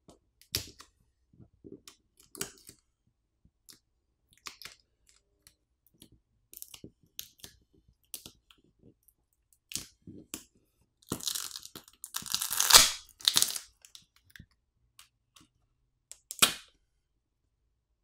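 Battery adhesive crackling and tearing as a OnePlus Nord 5's battery is pried out of its frame with its pull tab: scattered small clicks, then a louder stretch of tearing past the middle, and a single sharp crack near the end.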